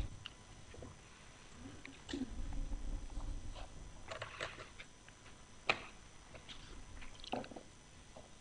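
Quiet room tone with a few scattered soft clicks and knocks, the sharpest one about six seconds in, and a brief low rumble about two seconds in.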